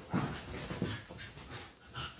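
Two dachshunds play-fighting, giving a quick run of short throaty dog noises and breaths, most of them in the first second.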